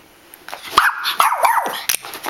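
Rat terrier play-barking, a quick run of three high, yappy barks starting about half a second in.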